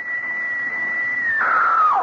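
A single shrill, scream-like wail. It rises sharply, holds one high pitch for over a second, then drops in two steps and fades near the end.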